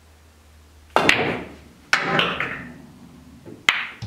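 Pool shot: a sharp clack about a second in as the cue strikes the cue ball and it hits the object ball, then more ringing clacks of pool balls colliding with each other and the rails, another loud one near the end.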